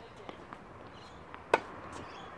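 Tennis ball struck by a racket at close range: one sharp pock about one and a half seconds in, with a few fainter ticks of the ball before it.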